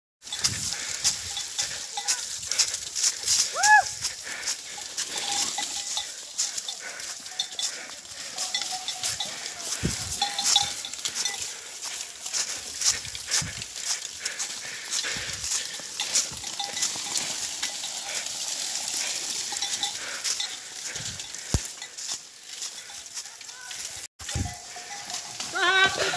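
A chase through dry scrub: dense, irregular crackling and snapping of brush and branches, mixed with a clanking bell. A brief rising-and-falling call comes about four seconds in, and a man's voice starts near the end.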